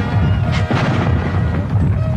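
Ball cannons firing, one boom about half a second in, over background music and a low rumble.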